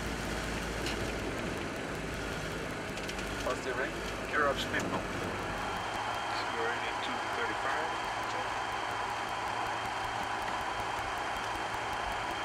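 Cockpit noise of a Canadair CRJ-200 regional jet at takeoff: a steady rush of engine and airflow, with a low rumble for the first couple of seconds that then drops away as the jet climbs out. Faint voices come through briefly about four seconds in.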